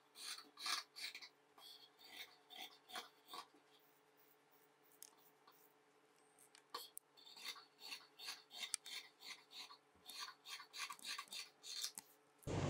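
Tailor's scissors snipping through fabric in a run of faint, short, crisp cuts, stopping for a few seconds about a third of the way in before the cutting resumes.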